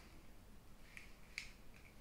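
A few faint clicks and taps of sunglasses being opened and put on, the loudest about halfway through, against near silence.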